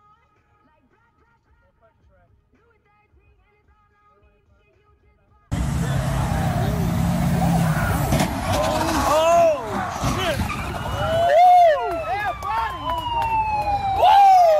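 Near silence for about five and a half seconds, then sudden road traffic noise of vehicles passing. From about eight seconds in, an emergency-vehicle siren wails in repeated rising-and-falling sweeps, with one long falling tone near the end.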